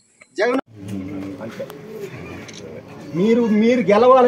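People talking in the open air: a man's voice over low background chatter, with clear speech again near the end.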